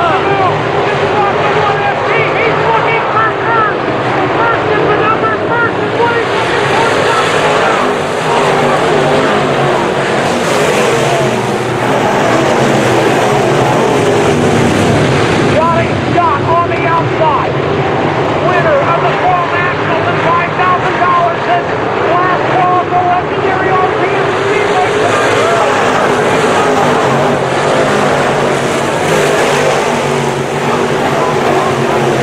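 A field of dirt-track modified race cars racing, their engines loud and continuous, with many overlapping rising and falling pitches as the cars lift and get back on the throttle around the track.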